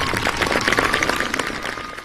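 Audience applauding, with the tail of the performance music faintly under it; the sound fades away near the end.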